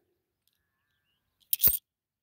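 Near silence, then one short, sharp clink about one and a half seconds in, as Australian 50-cent coins knock together in the hand.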